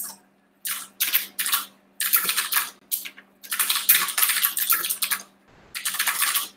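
Computer keyboard typing: irregular runs of keystrokes, with a longer flurry in the middle, as short shell commands are typed. A faint steady hum sits underneath until near the end.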